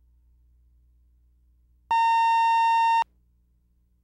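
A single electronic beep: a steady tone of about 1 kHz with a buzzy edge, starting about two seconds in and cutting off sharply after about a second. It has the sound of a videotape cue tone. Faint low hum lies under it.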